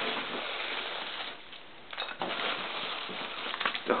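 Plastic bubble wrap and foam packing peanuts rustling and crinkling as a hand pushes into a cardboard box and handles the wrapped package, in irregular spells with a short lull in the middle.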